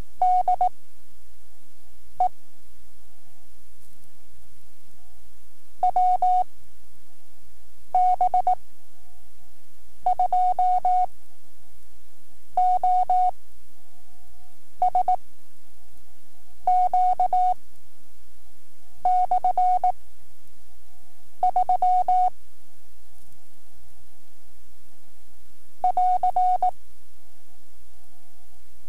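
Morse code practice transmission: a single steady tone of about 700 Hz keyed in dots and dashes, one character at a time with gaps of about two seconds between characters, at five-words-per-minute novice test speed, over a faint steady hum.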